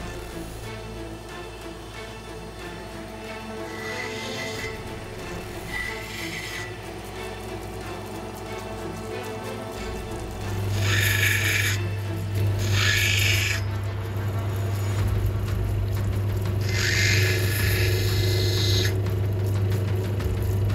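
Background music, and from about halfway a lapidary grinding machine's motor hum joins, with three bursts of grinding as a rough opal is pressed against the finer, water-fed wheel to take off the last potch.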